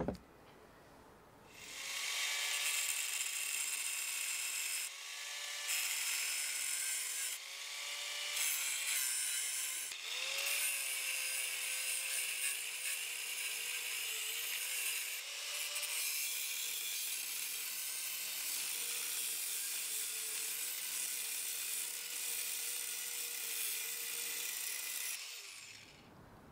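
Angle grinder with a thin metal cutting disc grinding off a broken weld remnant on the steel jack, a steady harsh grinding with the motor's pitch dipping and recovering as the disc is pressed into the work. A click comes at the very start, the grinding starts about two seconds in, and it stops shortly before the end.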